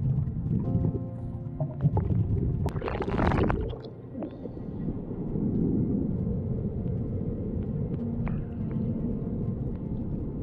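Muffled underwater rumble and water noise from a scuba diver moving along a river bottom and rising toward the surface, with a brief loud rushing burst about three seconds in. Background music with steady tones sounds over the first couple of seconds.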